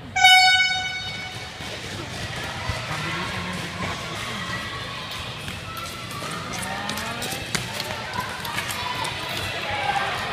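Short-track race starting signal: a single loud, buzzy tone lasting about half a second, sounded just after the starter's 'ready'. It is followed by a steady din of voices and rink noise while the skaters race.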